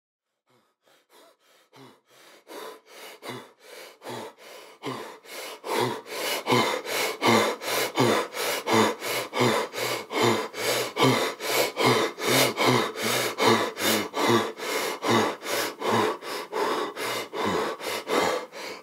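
A person breathing hard in quick, labored gasps, about two or three breaths a second. It fades in from silence about a second in, grows louder over the next few seconds, then holds steady.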